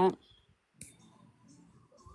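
The end of a spoken word, then a single faint click about a second in over quiet room noise.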